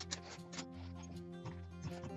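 Background music: a light tune of plucked strings over held bass notes, with notes picked out in a quick, regular pattern.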